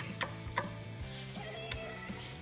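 A screwdriver gives a guitar's jack-plate screw a final check turn, making a couple of small clicks about a quarter and half a second in, over quiet background music.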